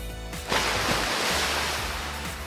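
Espresso machine steam wand hissing: a steady hiss that starts suddenly about half a second in.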